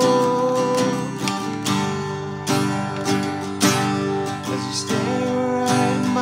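Acoustic guitar strummed in chords while a man sings over it, holding long notes near the start and again near the end.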